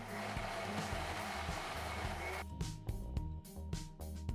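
Electric mixer grinder running, grinding cooked tomatoes to a paste in a steel jar, and cutting off abruptly about two and a half seconds in. Background music with a steady beat plays underneath and continues after.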